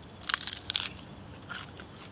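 Biting into and chewing a peeled raw bamboo shoot: a quick run of crisp crunches in the first second, then a few softer crunches.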